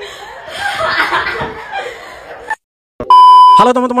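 A voice from a short video clip that cuts off abruptly about two and a half seconds in. After a brief silence comes a single short, high beep, and a man's voice starts loudly near the end.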